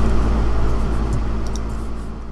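Steady low electrical hum and hiss of background room tone, growing slowly quieter, with a couple of faint clicks about one and a half seconds in.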